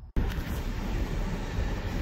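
Steady cabin noise inside a 2018 VW Atlas whose engine is running after a jump start. It starts suddenly just after the beginning and holds even.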